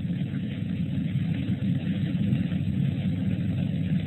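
Steady background noise, a low rumble with hiss, from the presenter's audio line during a pause in speech, with no distinct events.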